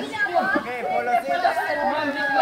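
Several young voices chattering at once, overlapping one another in conversation.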